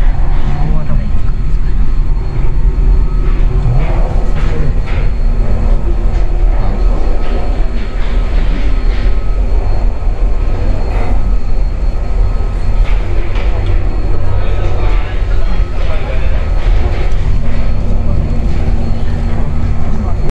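Gondola lift station machinery running: a loud, steady low rumble with scattered knocks and clanks as the cabin is carried through the station.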